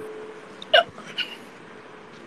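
A person's short hiccup-like vocal sound about three quarters of a second in, followed by a fainter one, over a faint steady hiss.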